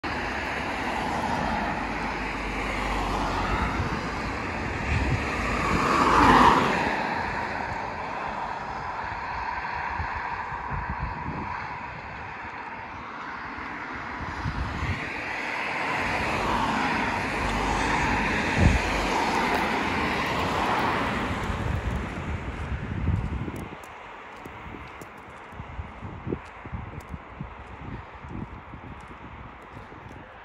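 Road traffic passing: one vehicle goes by, loudest about six seconds in, and another longer pass swells and fades between about fourteen and twenty-two seconds. After that it is quieter, with a few faint clicks.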